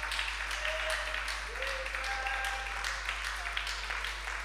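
A church congregation clapping, many irregular hand claps, with faint indistinct voices behind.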